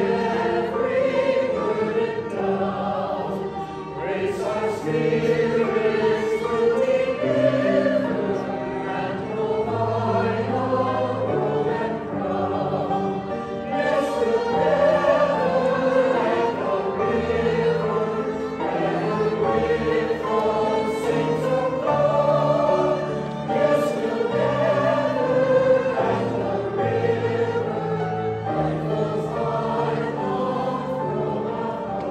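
Mixed church choir singing a hymn in harmony, accompanied by violin and piano.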